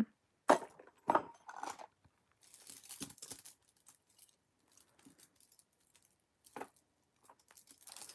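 Jewelry being handled and set down on a cloth-covered surface: a few short knocks, a burst of rustling about two and a half seconds in, and another knock near the end.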